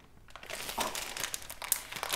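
Clear plastic wax-melt packaging crinkling as it is handled, starting about half a second in and crackling irregularly.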